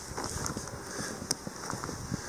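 Footsteps crunching through fresh snow at an uneven walking pace, with wind noise on the microphone.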